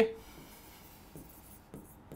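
Faint strokes of a pen writing on an interactive display board as digits are written, a few soft short scratches about halfway through.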